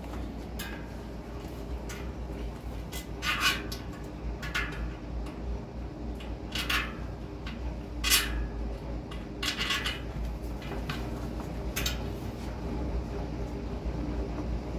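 Hands working a rubber inner tube into a 29 × 2.3 Continental Mountain King wire-bead mountain bike tyre on its rim: a handful of short rubbery scrapes and rustles, spaced a second or two apart, over a steady low hum.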